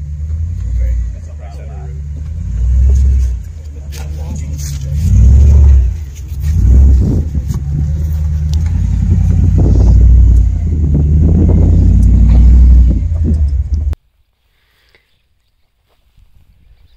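2008 Jeep Commander's 5.7 L HEMI V8 pulling up a snowy, rutted trail, a deep rumble that rises and falls in repeated surges of revs, then cuts off abruptly about two seconds before the end.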